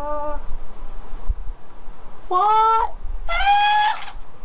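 Talking plush unicorn toy giving three short, high-pitched voice cries, each one higher than the last.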